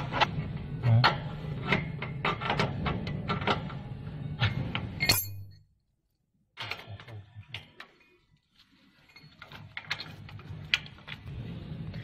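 Clicks and metallic taps of brass hose fittings and a spanner as water hoses are connected to the back panel of a plasma cutter, broken by about a second of silence halfway through, after which the taps are fainter.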